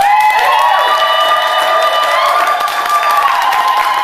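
Audience applauding, with several voices swooping up into loud, high, sustained cries over the clapping.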